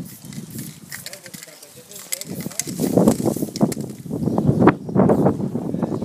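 Indistinct voices talking, growing louder from about two seconds in, with no words made out.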